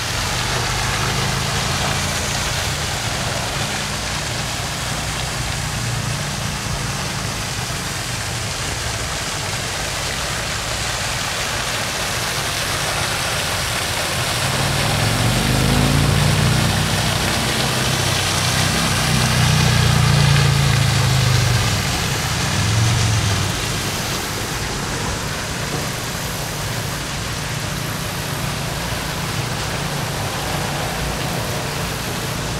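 A steady rushing noise, like water or rain, under the low hum of an engine running. The engine swells and rises and falls in pitch a few times past the middle.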